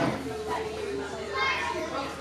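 Indistinct background voices in a large room, children's voices among them, talking and playing.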